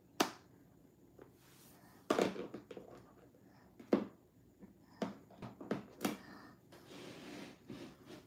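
Hands working with diamond painting tools: a series of sharp taps and clicks at irregular intervals a second or two apart, and a short rustle near the end.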